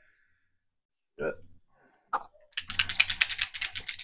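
A paint bottle being shaken, rattling in a fast run of sharp clicks, about eight a second, starting about two and a half seconds in. Two brief single sounds come before it.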